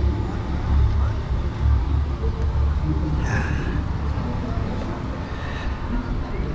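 Outdoor town-street ambience: a steady low rumble with faint voices in the background.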